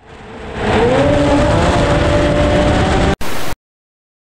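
Snowmobile engine in a road tunnel. It rises in pitch as it accelerates over the first second, then runs at steady high revs. It breaks off about three seconds in, comes back as a short burst, and then cuts off suddenly.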